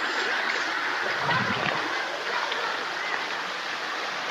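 Shallow creek running over a stony bed: a steady, even sound of flowing water.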